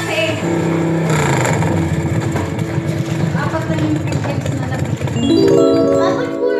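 Background music mixed with overlapping voices; a held chord of steady tones comes in about five seconds in.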